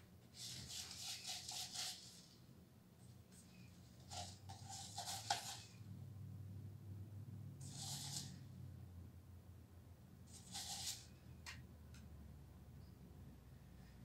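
Faint scratchy swishes of a small paintbrush stirring chalk paint in a plastic cup and dabbing it, in four short bouts, over a low steady room hum.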